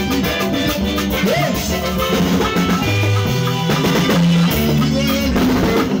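A live band playing an Anam traditional song. A drum kit and percussion keep a steady, brisk beat under several pitched instruments.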